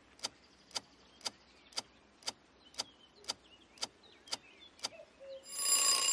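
Quiz countdown timer sound effect ticking evenly, about two ticks a second. Near the end a swell of noise with ringing tones rises and becomes the loudest sound, leading into the answer reveal.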